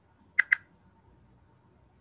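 Two quick computer mouse clicks, a fraction of a second apart, over faint room tone.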